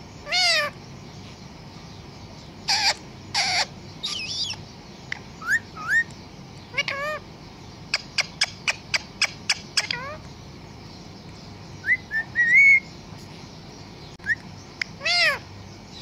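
Pet parrot giving short, separate whistled calls with bending pitch. About halfway through comes a quick run of about eight sharp clicks, roughly four a second, and a longer call follows a little later.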